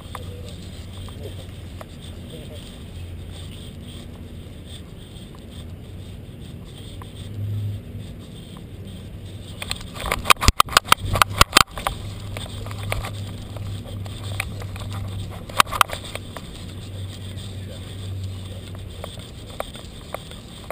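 Handling noise from a camera strapped to a walking dog's harness: a steady low rumble, broken about halfway through by a quick run of loud, sharp rattling knocks as the mount jolts, and a shorter cluster of knocks a few seconds later.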